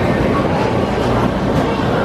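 Lionel Lines tinplate model electric train running round its track: a steady rumble and hum of the motor and wheels on the rails.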